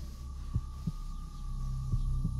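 Horror-film sound design: a low drone with a thin, steady high tone above it, under a slow heartbeat of soft paired thuds.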